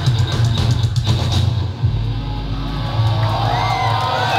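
Live deathcore band playing loud heavy drums and distorted guitars that stop about a second and a half in, leaving a low note droning on. Near the end the crowd starts to cheer and whistle.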